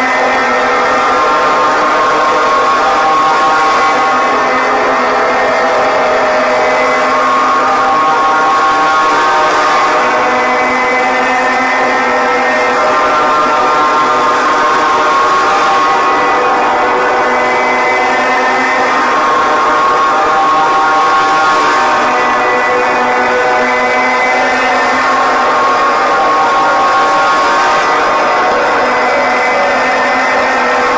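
Loud, steady ambient drone of layered sustained tones that shift to new pitches every few seconds, with no beat, an engine-like hum used as the film's soundtrack.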